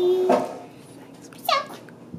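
A young girl's voice holding one long sung note that stops just after the start. About a second and a half in comes one short, high vocal sound that dips and then rises in pitch.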